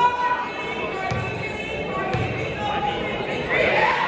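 Basketball bouncing on a hardwood gym floor, about once a second, under the murmur of crowd voices echoing in the hall.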